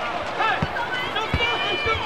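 Basketball arena sound: a crowd of voices shouting together, with sneakers squeaking in high gliding chirps on the hardwood court and three dull low thuds.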